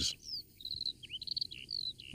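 Small birds chirping: short high trills and quick downward-swooping calls, a few notes at a time.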